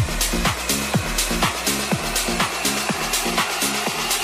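Soulful funky house music from a DJ mix: a steady four-on-the-floor kick drum at about two beats a second, with a bassline stepping between the kicks and hi-hats on top.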